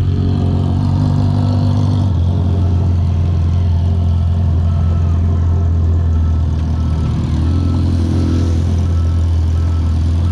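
Motorcycle engines ticking over at low road speed, the rider's Rusi Sigma 250 and a Suzuki 1000 cc close ahead, making a deep, steady drone. A slight rise in pitch comes near the end.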